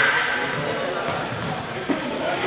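Indistinct chatter of young people echoing in a large sports hall, with a ball thudding on the hard floor twice, about a second in and just before the end.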